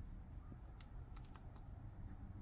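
Several faint, sharp clicks of a streaming-device remote's buttons being pressed in quick succession, mostly in the second half, over low room hum.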